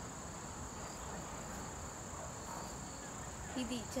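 A steady, high-pitched insect chorus drones without a break. A woman's voice comes in near the end.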